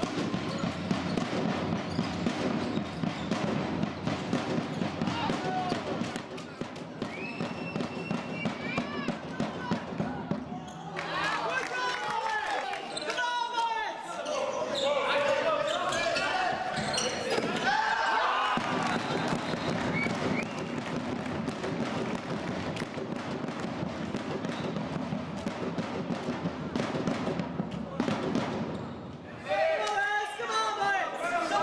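Indoor handball game sounds in a large sports hall: a handball bouncing on the wooden floor with repeated sharp knocks, over continual shouting and chatter from players and spectators. The voices grow louder and busier for several seconds around the middle.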